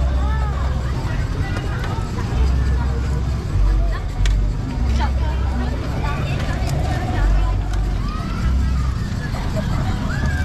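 Voices and general chatter of an outdoor crowd, over an uneven low rumble.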